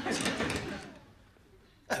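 Studio audience laughter, fading away over the first second. Then a short, sharp sound near the end.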